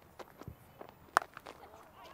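Cricket bat striking the ball once in a pull shot, a single sharp crack a little over a second in. Before it come a few faint thuds, from the bowler's delivery stride and the ball's bounce.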